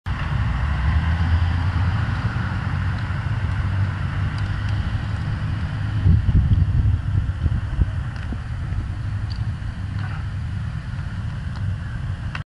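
Wind rumble on a bicycle handlebar camera's microphone while riding on a city road, with road and traffic noise underneath and a few knocks from the bike, loudest about six seconds in.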